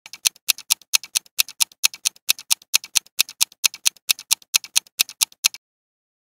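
Countdown timer sound effect ticking evenly, about four loud ticks a second with softer ticks between, then stopping about half a second before the end.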